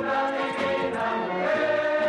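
Choral music: a choir singing long held notes.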